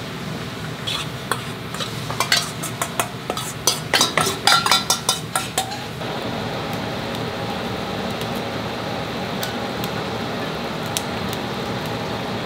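A metal spoon clinks and scrapes quickly against a stainless steel bowl and pot as miso is worked into pork miso soup, stopping just before six seconds. After that comes a steady hiss of the soup simmering over a gas flame.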